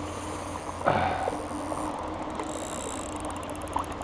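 A hooked fish splashing at the water's surface as it is drawn toward a landing net, with the loudest splash about a second in, over a steady low background hum.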